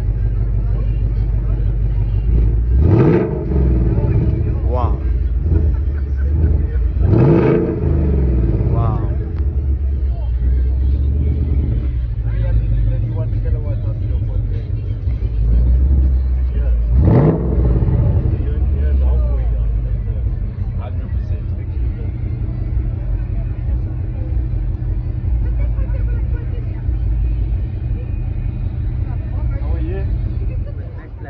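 Ford Mustang GT's 5.0-litre V8 idling with a steady low rumble, revved three times: the engine note rises and falls about three seconds in, again about seven seconds in, and once more about seventeen seconds in.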